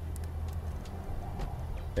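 A steady low rumble of background noise, with no distinct event.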